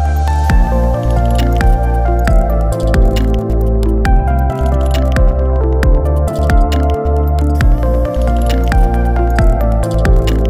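Background music with a steady beat and deep bass.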